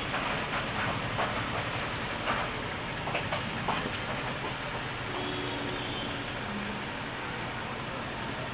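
Cotton blouse fabric rustling and brushing on a tabletop as cut pieces are handled and smoothed, with a few faint soft taps, over a steady background noise.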